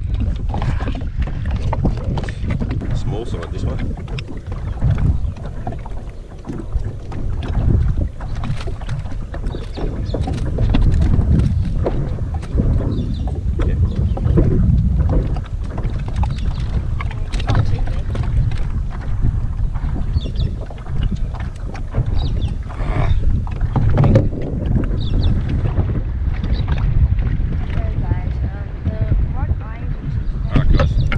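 Wind rumbling on the microphone over water lapping against a plastic fishing kayak's hull, with scattered knocks and clicks.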